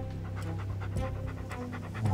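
A St Bernard panting in quick, even breaths.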